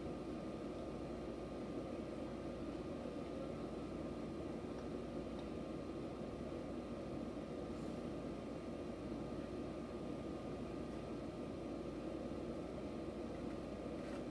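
Steady hum and hiss inside a standing JR Kyushu Kashii Line BEC819 battery train, its onboard equipment running while it waits at a platform, with a thin steady high whine over the hum.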